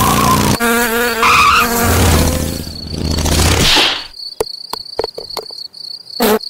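Cartoon insect flight effects: loud, dense wing buzzing mixed like racing engines as a ladybug and a fly speed past, with a deep rumble in the middle, ending in a whoosh about four seconds in. Then a steady, thin, high cricket-like chirp with scattered light ticks.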